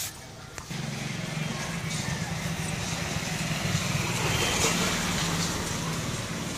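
A motor vehicle's engine runs as it passes on the street. It starts under a second in, grows louder to a peak about two-thirds of the way through, then eases off.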